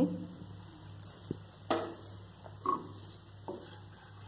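Wooden spoon stirring a dry, crumbly spiced moong dal filling in a nonstick pan: a few short, soft scrapes and knocks spaced about a second apart, over a low steady hum.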